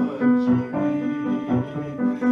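Live operatic aria: a man's bass voice singing with grand piano accompaniment, moving through a series of held notes in the lower middle range.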